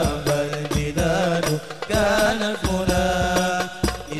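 A hadroh ensemble performing: men's voices sing an Arabic devotional chant in wavering, ornamented lines over frequent strikes of rebana frame drums.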